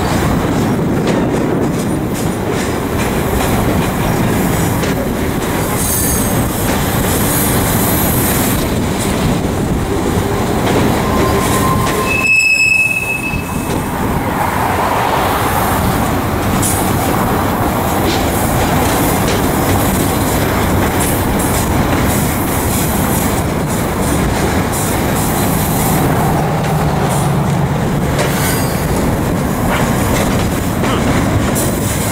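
Double-stack intermodal container train rolling past at close range: a steady rumble and rattle of steel wheels on rail and well cars. A short, high wheel squeal comes about twelve seconds in.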